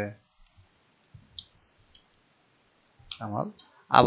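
A few faint computer mouse clicks about a second in, switching the Avro keyboard layout between English and Bangla. A short phrase of speech follows near the end.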